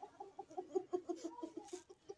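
A chicken clucking in a quick, even run of short clucks, about six or seven a second.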